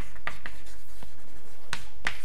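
Chalk writing on a blackboard: a few short scratching strokes, with a louder stroke near the end.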